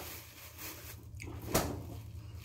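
A plastic produce bag rustling softly as it is handled, with one short knock about a second and a half in, over a steady low hum.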